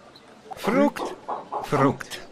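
Soundtrack of a dubbed film clip played back over a webinar: two loud, short vocal calls with swooping pitch, about a second apart, over a noisy background.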